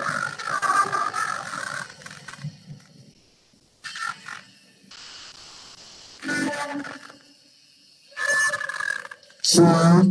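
Guided yoga nidra meditation recording: soft music with a held, wavering melodic tone that dies away about two seconds in, then short spoken phrases separated by long quiet pauses.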